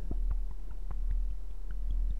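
Buchla 200e modular synthesizer playing a sine-oscillator FM patch at a low principal pitch: a deep, steady tone with a fast, slightly uneven ticking running through it.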